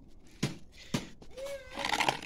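Two sharp knocks about half a second apart, then cats meowing with short rising-and-falling calls near the end.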